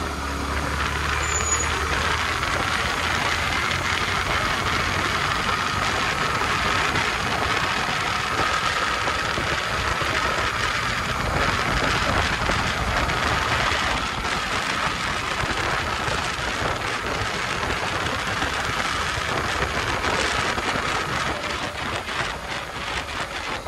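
Yamaha R15 V3's single-cylinder engine running as the motorcycle picks up speed on the road, under a steady rush of wind on the microphone.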